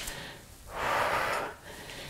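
A woman breathing out hard once, starting about half a second in and lasting about a second: the breath of exertion during a dumbbell exercise.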